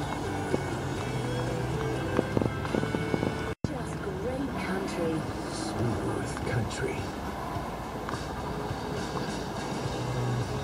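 Background music with steady held bass notes; the sound drops out completely for an instant about three and a half seconds in.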